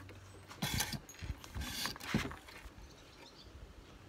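A deck of oracle cards being shuffled by hand: several short rustling strokes in the first two seconds or so, then quieter.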